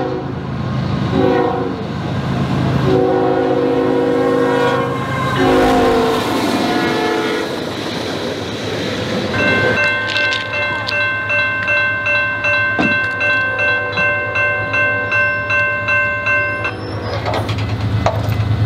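Diesel locomotive horn sounding a chord of several notes in long and short blasts over the low rumble of the passing train. After a pause of a few seconds, a bell rings steadily about twice a second for several seconds, then stops.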